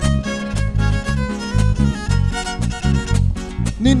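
A live band plays an instrumental passage, with a violin carrying the melody over a small strummed guitar and electric bass in a steady, pulsing beat. A man's singing voice comes in right at the end.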